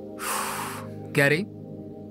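A man's long breathy sigh, then about a second in a brief vocal sound, over steady background film music.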